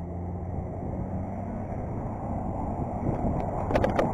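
BMX bike rolling fast over asphalt: tyre rush and wind buffeting the camera mic, growing louder, with a low steady hum of a nearby vehicle engine in the first half. A brief clatter of sharp clicks near the end as the wheels roll up onto the concrete sidewalk.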